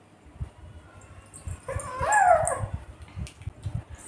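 A young infant gives one short whimpering cry about two seconds in, rising and then falling in pitch, over soft low bumps from the baby being handled.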